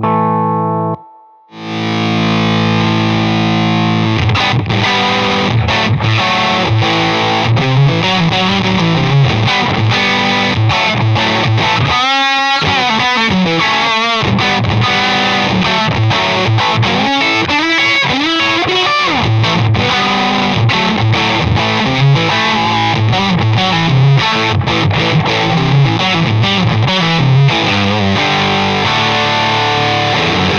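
Electric guitar played through a Rare Buzz Effects Fuzz Bob-omb germanium fuzz pedal: thick, heavily fuzzed chords and riffs. The playing stops briefly about a second in and again for a moment about halfway through.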